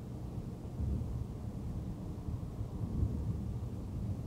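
Low, steady rumble of a car's tyres and engine heard inside the cabin at about 40 mph. It swells louder about a second in and again near three seconds.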